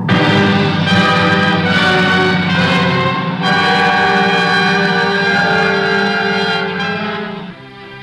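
Orchestral film-score music: loud, held chords with brass, fading away near the end.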